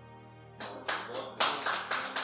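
A small audience clapping briefly and unevenly, starting about half a second in, over soft background music with steady sustained tones.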